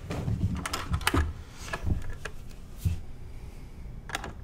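Irregular knocks and taps of a firefighter's boot and composite helmet being handled on a table, the helmet lifted and turned over.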